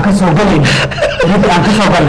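A man talking while another man chuckles.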